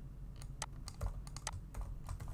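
Computer keyboard being typed on, a quick irregular run of key clicks, about five a second.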